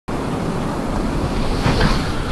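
Steady rushing noise of wind buffeting the microphone.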